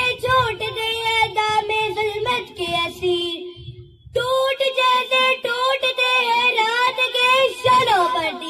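A girl singing a verse into a microphone in long held notes, with a short pause about four seconds in.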